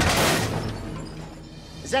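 A sudden smash against a car, with breaking glass that hisses and dies away over about a second.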